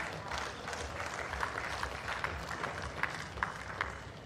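Crowd applauding, with a scattering of sharp single claps standing out over the steady clapping.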